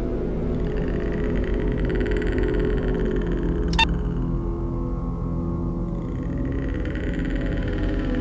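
Dark ambient background music: a steady low drone, with a single sharp click a little under four seconds in.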